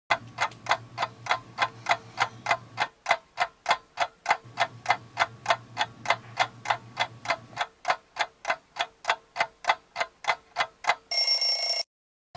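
Clock ticking evenly, about three ticks a second. Near the end it gives way to a short, loud, shrill electronic alarm-clock tone that cuts off suddenly.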